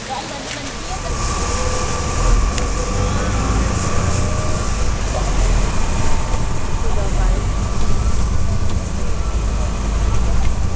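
Steady low rumble of a car on the road, heard from inside the cabin, building up about a second in.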